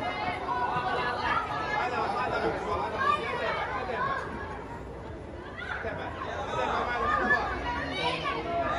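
Overlapping chatter of many voices, children and adults, with no single speaker standing out. The voices drop for a moment about five seconds in, then pick up again.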